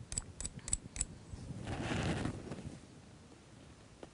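A steel paperclip stroked repeatedly against a magnet to magnetize it, clicking about four times a second, stopping about a second in; a brief soft rustle of handling follows.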